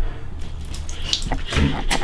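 Water poured from a plastic container onto a towel held over a face, splashing into the bathtub. A short vocal sound, like a gasp or sputter, comes near the end.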